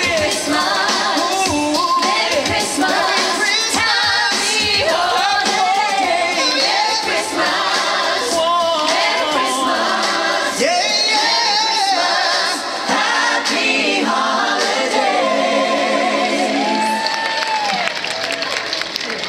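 Live pop singing: several voices singing together over amplified backing music, ending with a long held note near the end.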